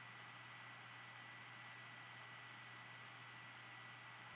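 Near silence: faint steady recording hiss with a thin high whine and a low hum.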